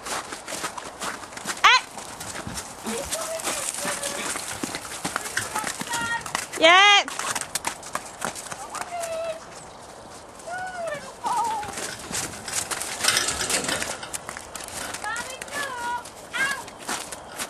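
Welsh ponies moving about, hooves clip-clopping, with one loud quavering whinny about seven seconds in.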